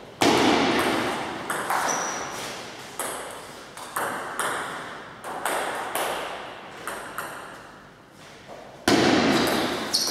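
A table tennis ball is knocked back and forth in a rally, a sharp knock off bat and table about once a second, each one echoing in the large hall. Two louder knocks come just after the start and about nine seconds in.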